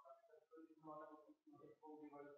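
Faint, indistinct speech, much quieter than the lecturer's miked voice.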